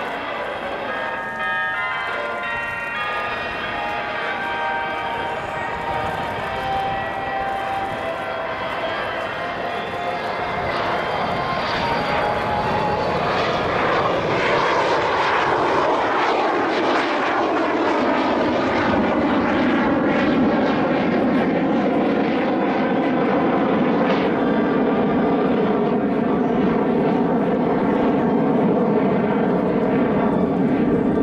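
Kawasaki T-4 jet trainer's twin turbofan engines growing louder as it flies close past. The engine whine falls in pitch in the middle of the pass, then a steady loud jet noise carries on to the end.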